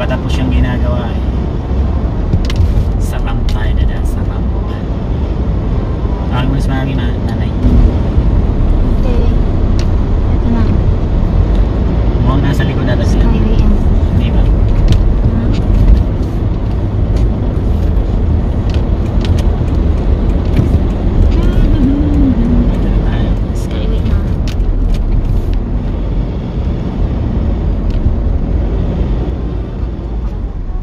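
Road and engine noise inside a moving car at expressway speed: a steady low rumble with scattered short clicks.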